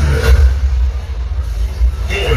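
Live band music played loud through a PA, with the low bass dominating and the vocals paused.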